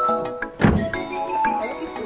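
A car door slammed shut once, a single solid thunk about two-thirds of a second in, over steady background music.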